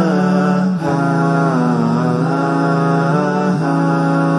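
Chant-like vocal theme music: long sung notes over a steady low drone, with the melody bending slowly up and down.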